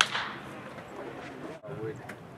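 A single sharp pop of a pitched baseball hitting the catcher's mitt, with a brief ring after it, followed by faint voices around the ballpark.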